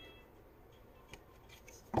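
Faint handling of tarot cards: light ticks and rustles as cards are drawn off the deck, then one short soft thump near the end as a card is laid down on a cloth-covered surface.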